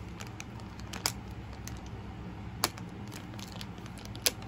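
Light handling noise: a few scattered clicks and taps of small objects, the loudest about two and a half seconds in, over a steady low hum.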